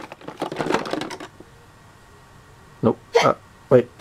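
Hollow plastic toy food pieces clicking and clattering against each other and their box in quick succession for about the first second, then stopping.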